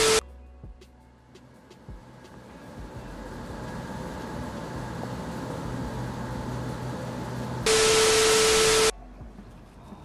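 Loud TV-static glitch sound effect, a hiss with a steady beep-like tone, cutting off at the very start and returning for about a second near the end. Between the two, a steady machine hum that slowly grows louder.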